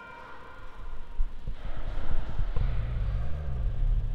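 Handling noise from the recording device being moved and reframed: irregular low rumbling and bumping that builds from about a second in and is loudest in the second half. A few faint held tones fade away at the start.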